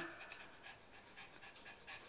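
Pomeranian panting faintly.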